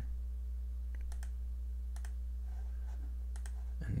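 A handful of short, sharp computer mouse clicks spaced out over a few seconds, over a steady low electrical hum.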